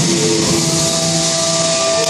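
Music with guitar playing, settling into long held notes about halfway through.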